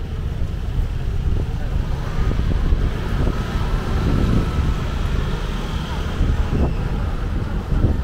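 Outdoor street ambience dominated by a steady, fluctuating low rumble of wind on the microphone, with faint voices in the background.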